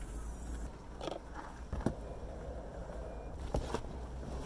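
Ski boots and other gear being handled in a car's trunk: a few light knocks and scrapes, spaced out, over a low steady rumble.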